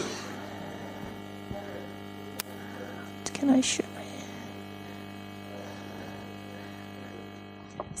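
Steady electrical mains hum in the audio system, with a single sharp click about two and a half seconds in and one short spoken word about a second later.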